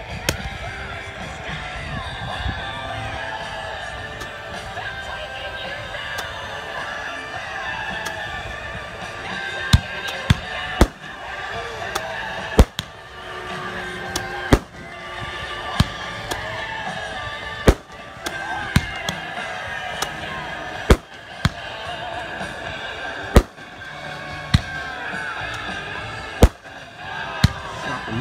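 A crowd of voices over music, then from about ten seconds in a string of sharp, loud pops, one every one to three seconds.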